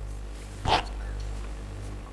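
A steady low electrical hum from the hall's public-address system, with one short, sharp sound a little under a second in.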